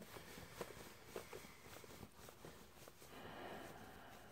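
Near silence, with a few faint, scattered small clicks from hands handling a cordless drill.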